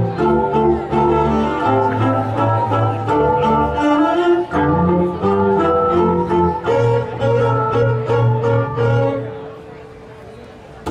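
A string ensemble of violins and cellos playing a piece together, with sustained bowed notes and a moving bass line. Near the end the music thins to one held note that fades away.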